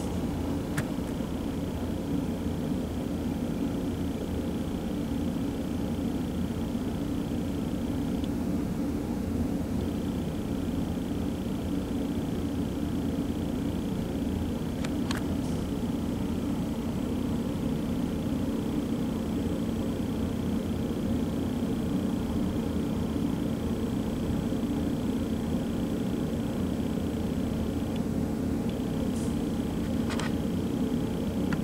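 Steady low hum and rumble of background noise, with a faint click about a second in and another about halfway through.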